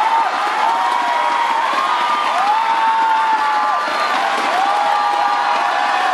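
Large arena crowd cheering and screaming, with many long high shouts overlapping over a steady roar.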